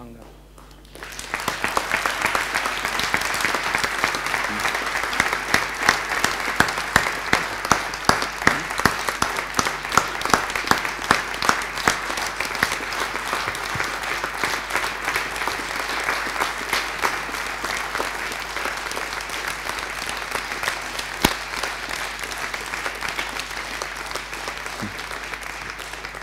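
Audience applause: a large crowd clapping, starting about a second in and going on steadily, with single sharp claps standing out.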